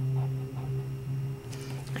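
A steady low electrical hum, with faint scratching of a gel pen colouring on card stock.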